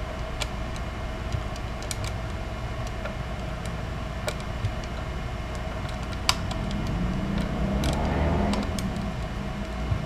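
Small scattered clicks and ticks of a steel Allen wrench working in a stripped truss rod nut, over a steady hum. A low rumble swells and fades about seven to nine seconds in.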